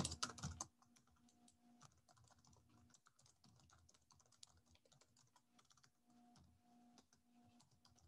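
Faint typing on a computer keyboard: a run of quick, irregular keystrokes, louder in the first half second.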